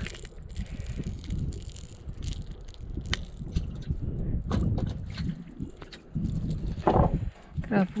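Scattered clicks and knocks from a banded grouper being unhooked from a lure and dropped into a wooden boat, over a steady low rumble of wind on the microphone.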